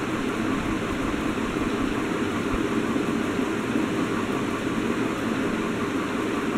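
Steady room noise: a continuous hiss with no distinct events.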